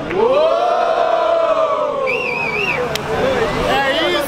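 A crowd lets out a long rising-and-falling "uooo" cheer, with a warbling whistle about two seconds in and a sharp clap or click shortly after.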